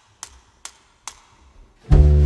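Opening of a pop song: a steady run of sharp percussive clicks, a little over two a second, then the full band with bass and guitar comes in near the end.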